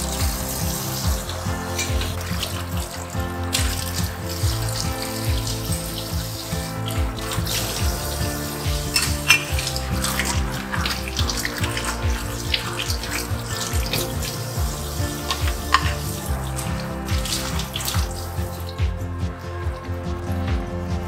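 Kitchen faucet running into a stainless steel sink while dishes are washed by hand, with scattered short clinks and knocks of dishes, under background music.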